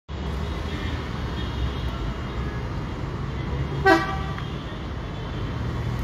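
One short vehicle-horn toot about four seconds in, over a steady low rumble of city background noise.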